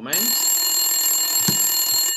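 Telephone ringing: a loud bell-like ring that lasts almost two seconds and then cuts off, with a short knock about a second and a half in.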